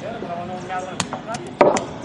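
Pétanque boules knocking on a dirt court: a few sharp knocks, the loudest about one and a half seconds in, with voices murmuring in the background.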